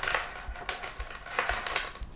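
Light clicks and rustling from a plastic LED strip and its cables and connectors being handled and untangled.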